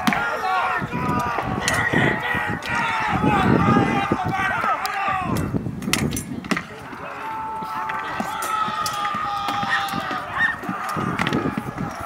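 Many re-enactors in a mêlée shout and yell, with the sharp clacks of weapons striking shields and poles. A few longer held cries come after the middle.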